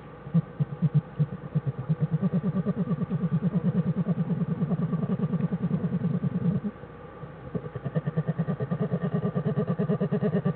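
Newborn black bear cubs humming while they nurse: a rapid, even, motor-like pulsing that breaks off briefly about seven seconds in and then starts again.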